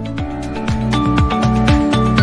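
Background music with sustained synth-like notes over a steady beat of low drum hits.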